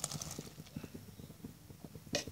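Pot of date-palm juice with shemai pitha simmering, giving faint, irregular soft bubbling pops, after a short rustle right at the start as grated coconut is tipped in.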